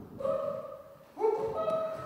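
Group of performers' voices singing long held notes, with new notes entering about a second in and overlapping into a harmony, sounded while they catch and throw bean bags.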